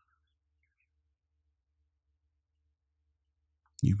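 Near silence: a pause with only a very faint low hum, until a man's soft voice begins just before the end.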